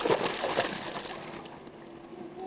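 A swimmer diving into a swimming pool: a sudden splash at the start, then churning, sloshing water that fades over about a second and a half.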